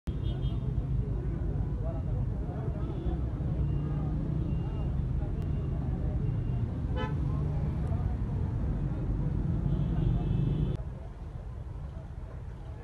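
Busy road traffic: vehicle engines running as a steady low rumble, with several short car horn toots and one longer honk near the end. The rumble drops away suddenly about 11 seconds in.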